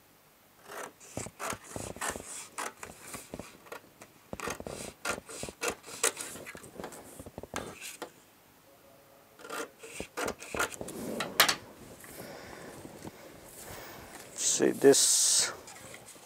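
Scissors cutting through stiff paper pattern paper in a run of short, crisp snips, with the paper rubbing and sliding on a wooden table. Near the end comes a louder, longer paper rustle as the piece is handled and folded.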